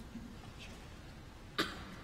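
A single short cough about one and a half seconds in, over faint room noise in a large, quiet church.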